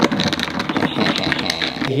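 A long metal spoon stirring a drink over ice in a glass: rapid, irregular clinks and rattles of spoon and ice against the glass, over the fizz of freshly poured ginger ale.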